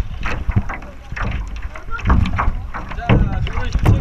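Water splashing and sloshing against a clear kayak hull right by the microphone as the kayak is paddled, in repeated short splashes, over a steady wind rumble on the microphone.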